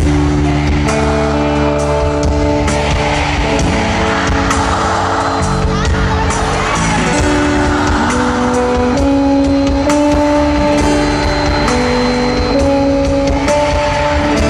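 Live pop band playing an instrumental passage of a ballad through a concert PA, heard from the audience: a melody of held notes stepping from pitch to pitch over bass and drums, with crowd noise underneath.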